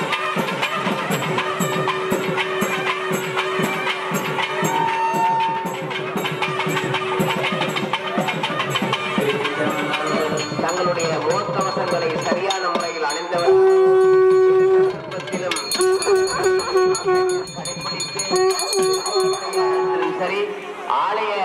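Traditional temple music: a wind instrument holds long notes over a fast, steady percussion rhythm, and the held notes grow loudest about two-thirds of the way through.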